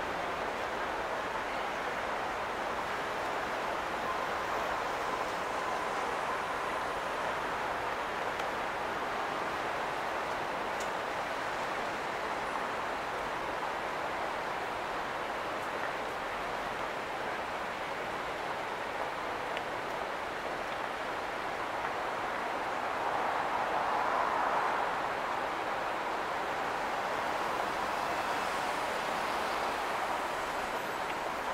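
Steady city street noise of traffic, an even hum with one brief swell, as of a vehicle passing, about two-thirds of the way through.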